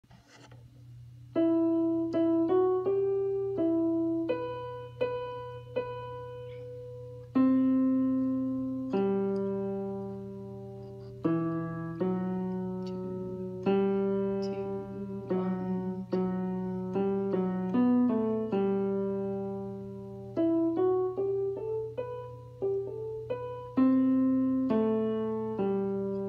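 Piano playing the tenor line of a choral piece slowly, note by note, each note struck and left to ring out, with a few two-note moments. A steady low hum runs underneath.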